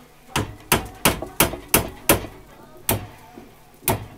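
Small hammer striking metal: six sharp, evenly spaced blows about three a second, then two more slower ones, the last near the end.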